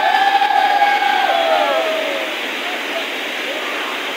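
Stream water rushing steadily over rocks at a waterfall, with several voices shouting a long drawn-out call together over the first two seconds before it trails off.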